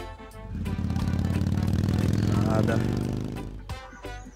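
A motor vehicle's engine passing by: it swells up about half a second in, is loudest past the middle, and fades away near the end.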